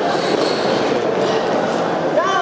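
Steady din of a large indoor competition hall, with no distinct voices or impacts standing out.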